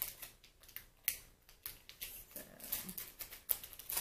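Handling noise from a makeup brush and its packaging: a few scattered light clicks and taps.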